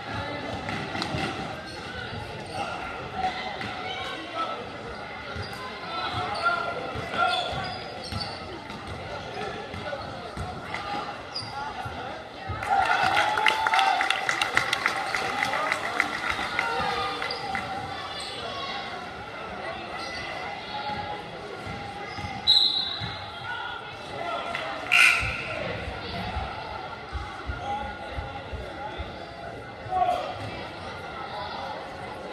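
A basketball being dribbled on a hardwood gym floor during a game, under steady crowd chatter in a large hall. About halfway through, a louder stretch of crowd noise rises for several seconds, and near the end two short, sharp high sounds stand out, fitting a referee's whistle.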